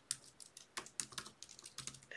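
Computer keyboard being typed on: about a dozen quick, uneven keystroke clicks as a word is typed out.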